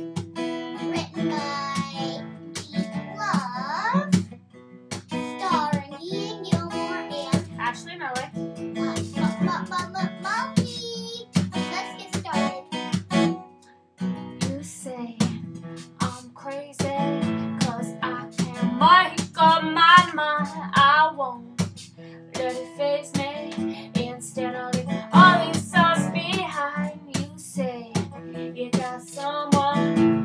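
Steel-string acoustic guitar strummed, with a woman and a young boy singing along, and a short break in the playing a little under halfway through.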